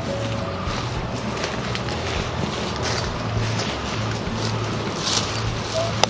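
Outdoor yard ambience: steady wind noise on the microphone with scattered rustles of chickens scratching in dry leaves.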